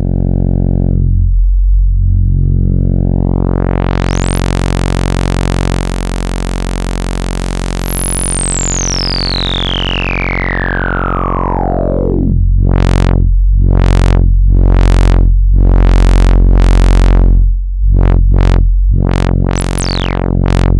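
Sawtooth synth oscillator holding one low note through the Dwyfor Tech Pas-Isel Eurorack low-pass filter, its input gain cranked into overdrive for a big, bulbous sound. The filter opens up, a bright resonant peak sweeps slowly down from the top, and in the second half the cutoff is swept open and shut about once a second.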